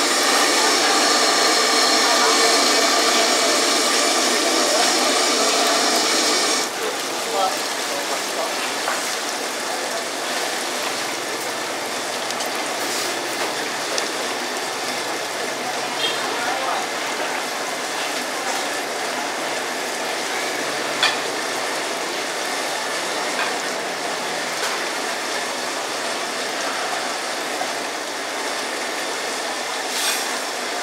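Busy hawker-stall ambience: a steady din of background chatter and stall noise, with a few sharp clinks of a metal ladle and china bowls. A louder, denser roar in the first seven seconds or so cuts off abruptly, after which the background is quieter.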